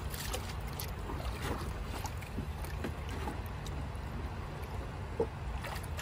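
Fishing net being handled at the water: small splashes and light clicks over a steady low rumble, with one sharper knock about five seconds in.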